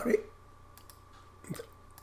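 Faint clicks at a computer, with a brief, louder click about one and a half seconds in, against quiet room tone.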